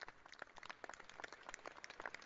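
Faint, scattered applause: a small group of people clapping unevenly, single claps landing irregularly.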